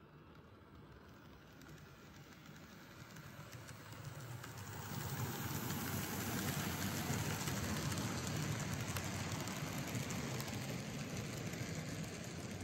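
N-scale Kato Santa Fe Super Chief model train running past on Atlas track: a rolling whir with fine, rapid clicking of wheels on the rails. It grows louder as the train nears, levelling off about five seconds in.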